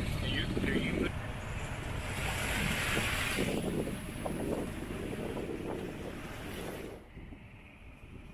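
Wind buffeting the microphone over water rushing and slapping past a small sailboat under sail, dropping to a quieter rush about seven seconds in.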